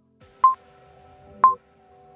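Workout interval timer's countdown beeps: two short, high beeps a second apart, marking the last seconds of the stretch hold, over soft background music.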